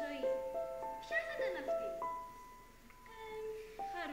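Voices singing a melody in held notes that step up and down. About halfway through it thins to a single held high note and grows quieter, then the melody picks up again near the end.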